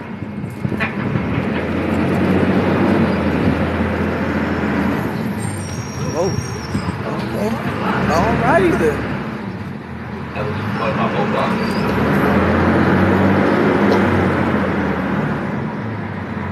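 Open-sided tour trolley driving, its engine hum and road noise heard from the passenger benches, growing louder twice with a lull about ten seconds in.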